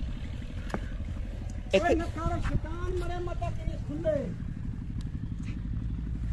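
A high-pitched voice making several short rising and falling calls for about two and a half seconds in the middle, over a steady low rumble.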